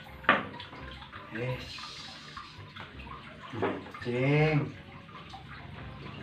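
Steady running water in the background, with a sharp click just after the start and a man's voice speaking two short phrases.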